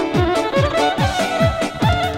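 Live Balkan folk music: a violin plays the melody over accordion, backed by a steady drum beat of about three beats a second. It is instrumental, with no singing.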